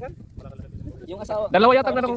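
A person's voice calls out loudly and briefly near the end, after a quieter stretch of low outdoor background noise.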